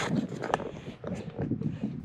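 A man's voice in a pause between phrases: breaths and brief sounds without clear words, over faint outdoor background noise.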